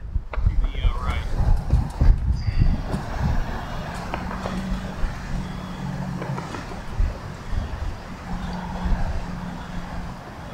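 Strong gusty wind buffeting the microphone as a low, uneven rumble, with a faint steady low hum that comes and goes in the second half.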